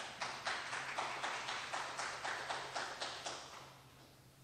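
A small audience applauding, with individual claps coming about five a second. It dies away after about three and a half seconds.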